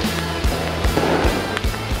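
Background music with a steady bass line and a regular drum beat.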